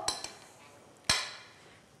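Kitchen dishware clinking once about a second in: a single sharp clink that rings briefly and fades within about half a second.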